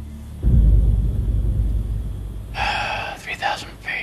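A sudden deep rumble about half a second in, dying away over a couple of seconds. Near the end a thin, narrow-sounding voice speaks over a walkie-talkie.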